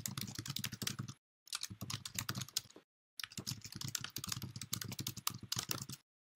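Computer keyboard typing: rapid runs of key clicks in three stretches, with two brief pauses.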